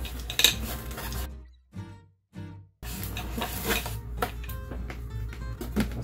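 Metal parts of a small telescope's column and mount clinking and knocking as they are handled, with a gap of near silence of about a second, a little over a second in.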